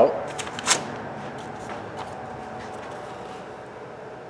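A few sharp clicks within the first second, then a faint steady hum with a thin whine: the CNC Shark router's stepper motors jogging the spindle into position over the workpiece.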